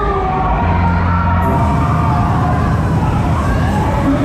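Loud fairground ride music with a heavy bass that comes in about half a second in, mixed with riders and crowd cheering and shouting, and gliding pitched tones above.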